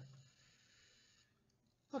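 Near silence: a man's voice trails off at the start, followed by a faint hiss lasting about a second, then quiet room tone.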